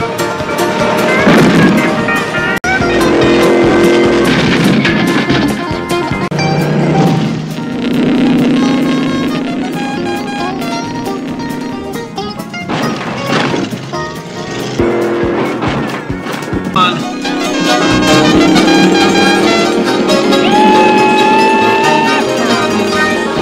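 TV-show soundtrack of a stunt car chase: a fast music score mixed over the General Lee, a Dodge Charger, racing and jumping, its engine rising in pitch over the last few seconds.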